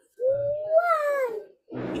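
A cat meowing once: a single drawn-out meow of a little over a second, rising slightly in pitch and then falling away.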